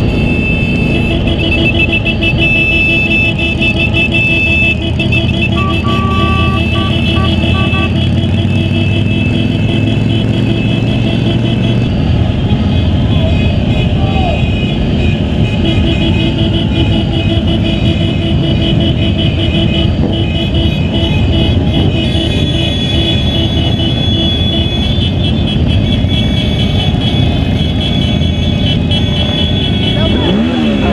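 Suzuki V-Strom DL650's V-twin engine running steadily at riding speed, loud over wind rushing past a bike-mounted action camera, with the engines of other motorcycles in the convoy around it.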